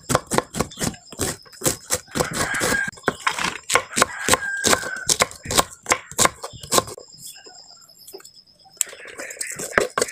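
Kitchen knife slicing thin shreds off a cabbage wedge on a wooden cutting board: a quick, irregular run of crisp cuts, each one ending in a tap on the board, which thins out about seven seconds in, with a few more cuts near the end.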